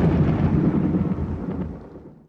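A deep rumble, the long tail of a big boom, dying away steadily and fading out near the end.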